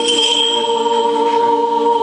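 Orthodox church choir singing unaccompanied, holding long steady notes of a chord.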